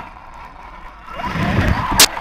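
Axial RYFT RC rock bouncer driving hard into a row of tires: from about a second in, its electric motor and drivetrain get louder and the tires scrabble and bounce on the rubber. A sharp crack comes at the very end.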